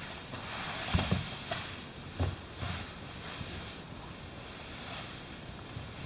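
Two grapplers scuffling on a mat: bodies and limbs rustling and shifting, with a few soft thuds, the clearest about a second in and again a little after two seconds.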